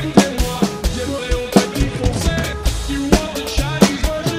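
Acoustic drum kit with Meinl cymbals played hard, with kick, snare and cymbal strikes coming several times a second, over an electronic backing track that carries a stepped melody.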